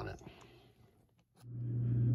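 A word ends, a moment of near silence follows, then a steady low hum fades in about one and a half seconds in and holds.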